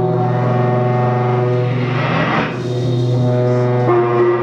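Electric guitar played through effects, holding a sustained drone of several stacked tones over a low hum. About halfway through a rough, noisy swell rises and fades, and the held chord shifts just before the end.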